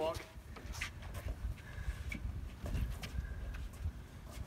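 Wheels of a loaded dolly rolling over a concrete sidewalk under a heavy wooden staircase: a low rumble with scattered knocks and footsteps.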